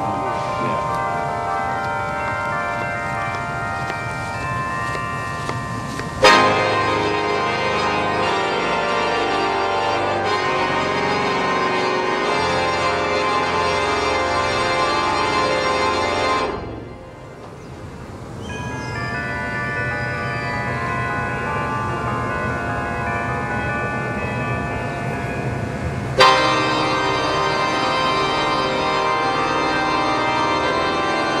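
Organ playing loud sustained fanfare chords, with a sudden louder chord entering about six seconds in and again near the end, and a short quieter passage a little past the middle.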